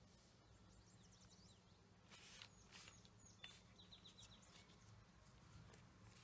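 Near silence with faint bird chirps: a few quick falling notes about a second in and a short trill of about five notes past the middle, with a few brief faint rustles between them.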